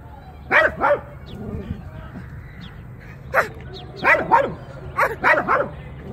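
A dog barking in short sharp barks: two just under a second in, a single bark at about three and a half seconds, then a quick run of about six barks.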